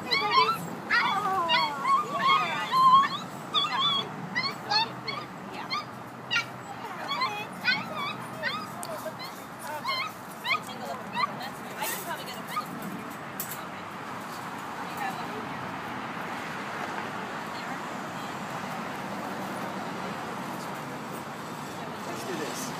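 Young puppies whimpering and yelping in short, high cries while they are untangled from netting and handled. The cries are thick in the first half and thin out after about twelve seconds, leaving a steady rushing background noise.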